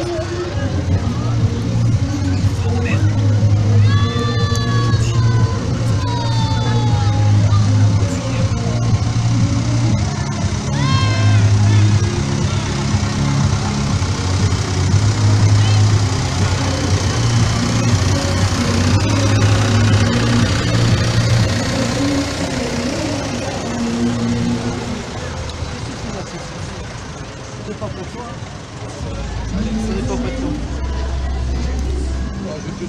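Music with a strong, stepping bass line, mixed with crowd chatter and the diesel engine of a Massey Ferguson 188 tractor running as it tows a parade float past.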